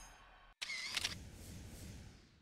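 Music of a logo animation fading out, then about half a second in a sudden sound effect, a hit with a short wavering tone, that dies away gradually.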